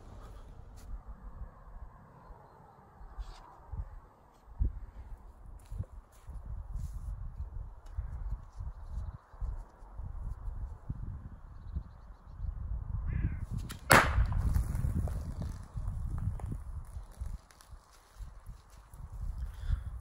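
A thrown replica Thor's hammer with a hatchet-like head strikes a wooden target round with one sharp thunk about two-thirds of the way in. A low, uneven rumble runs underneath.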